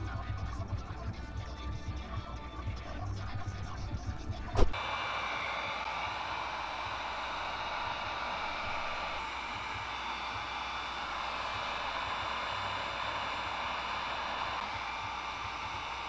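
Background music for the first four and a half seconds, then a click and a heat gun blowing with a steady hiss, used to heat the freshly poured plastisol in its mold.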